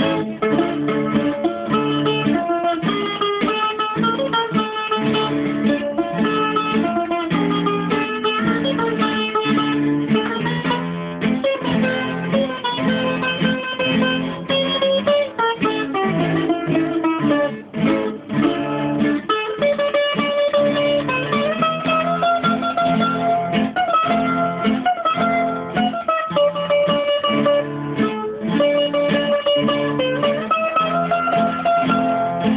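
Bouzouki music: a quick plucked melody line played over lower chords, running continuously.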